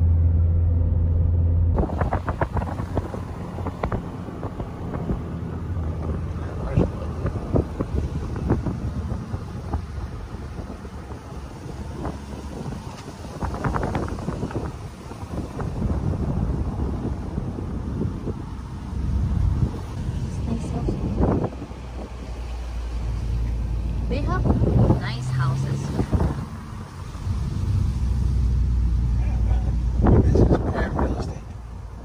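Cabin noise of a 2020 Hyundai Veloster Turbo on the move: a steady low rumble of tyres and engine, with small knocks and rattles. A louder low hum cuts off about two seconds in, and brief bits of voices come through now and then.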